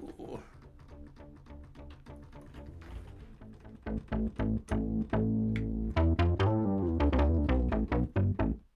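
Minimoog Model D synthesizer app playing a fast series of short, low bass notes. The notes are fairly quiet at first and get much louder about four seconds in, as the volume is turned up.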